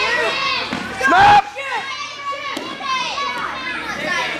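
Spectators, many of them children, shouting and yelling over one another as a wrestler takes his opponent down to the mat, with one loud shout a little after a second in.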